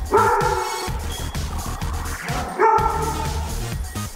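A dog barking twice, once right at the start and again about two and a half seconds later, over background music.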